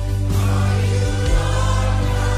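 Christian worship song: a choir singing over held chords and a steady bass, the sound filling out about a third of a second in.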